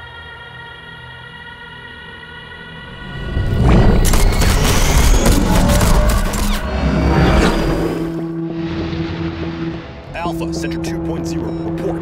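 Film soundtrack: a sustained, tense music chord, then a sudden loud burst of explosion and crashing effects with sharp hits as the alien ship blasts away, lasting about three seconds. It settles into a steady low hum, with crackling radio-like clicks near the end.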